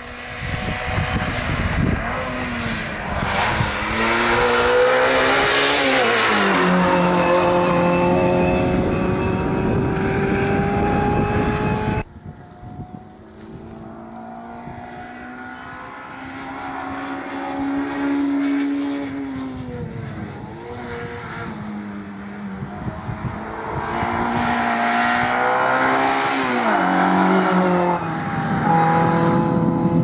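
Autobianchi A112 Abarth's four-cylinder engine racing uphill, revs climbing and dropping again and again through the gear changes. The sound cuts off suddenly about twelve seconds in and comes back quieter, then builds as the car draws nearer.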